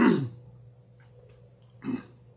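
A man drinking from a plastic gallon jug of water: a short grunt-like throat sound with a falling pitch as he starts to drink, faint swallowing in the middle, and another short throaty sound near the end as he lowers the jug.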